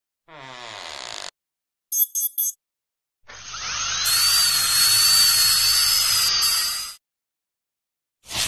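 Dental drill running: a little over three seconds in it spins up with a rising whine, holds a steady high pitch for about three and a half seconds, then cuts off suddenly. Before it come a short tone falling in pitch and three quick high blips.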